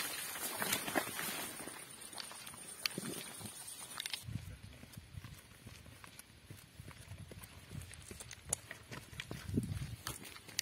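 Footsteps crunching on a stony dirt track, an irregular series of sharp scuffs and clicks, with brush rustling in the first couple of seconds.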